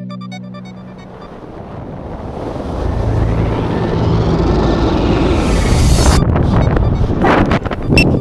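Wind rushing over the camera's microphone in the airflow of a tandem skydive, a steady rush that swells over a few seconds and stays loud. Background music fades out just at the start.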